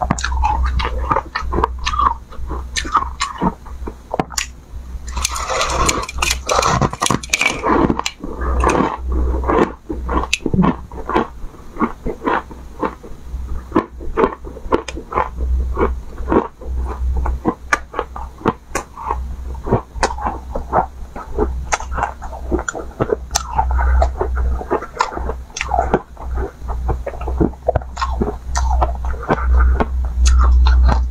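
Close-miked crunching of crumbly, frozen coloured ice being bitten and chewed, a fast, irregular run of sharp cracks. The crunching is densest for a few seconds about five seconds in.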